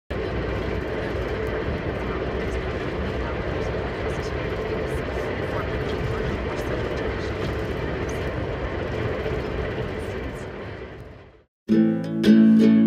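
VIA Rail passenger train running, heard from inside the car: a steady rumbling rush of wheels on track that fades out about eleven seconds in. Plucked guitalele notes start just before the end.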